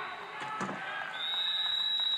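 Indoor pool arena ambience: a faint voice and background sound in a large hall, with a steady high thin tone coming in about a second in.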